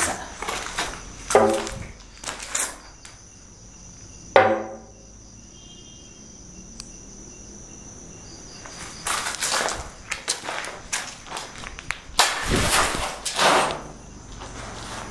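Scuffing footsteps and knocks on a debris-strewn concrete floor over the steady high chirr of crickets. About four seconds in there is a sudden loud hit followed by a falling tone. The scuffing picks up again in the last few seconds as he moves into a fighting stance.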